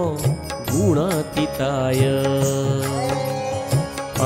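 Jain devotional hymn music: chanted Sanskrit stotra with instrumental accompaniment. A wavering, ornamented note comes about a second in, followed by long steady held notes.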